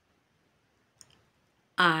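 Near silence broken by one short, faint click about halfway through, followed near the end by a woman's voice starting to count aloud.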